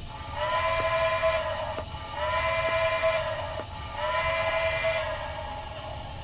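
Steam whistle from the Paragon3 sound decoder in a Broadway Limited HO-scale 2-8-0 Consolidation, played through the model's speaker: three blasts, each a little over a second long, with short gaps between them.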